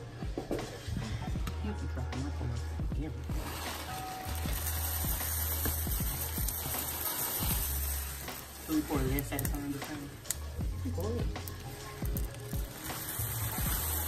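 Background music with a deep bass over the sound of crispy rice cereal going into melted marshmallow and butter in a pan and being stirred with a wooden spoon, with a light sizzle. A hiss sets in about four seconds in as the cereal goes in.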